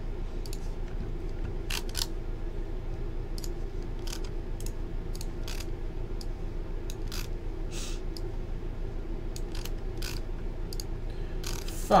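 Scattered sharp clicks of a computer mouse and keyboard, about a dozen at irregular intervals, over a steady low electrical hum.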